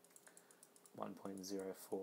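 A quick run of soft computer keyboard keystrokes in the first second, as a dimension value is typed into CAD software.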